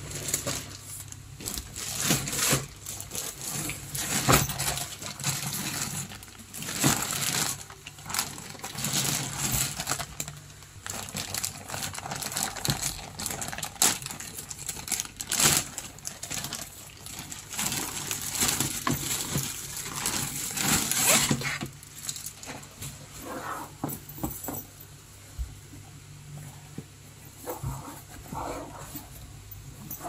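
Clear plastic bag crinkling and rustling in repeated bursts as a backpack is pulled out of it and unwrapped. The handling is busiest for the first twenty seconds or so, then goes quieter and more scattered.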